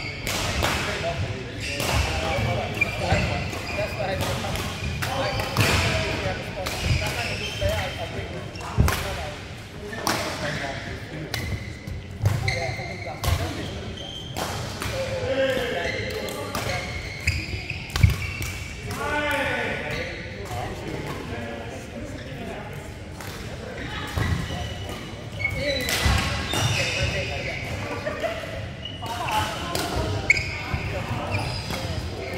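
Badminton rackets striking shuttlecocks in rallies: sharp smacks at irregular intervals, echoing in a large hall, with players' voices mixed in.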